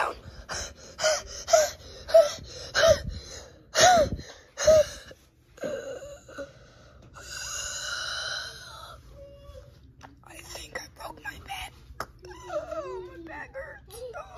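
A child making mock wheezing vocal noises for a toy: a run of short, loud moaning calls, each rising and falling in pitch, about two a second, then one long breathy rasp, then softer whimpering sounds near the end.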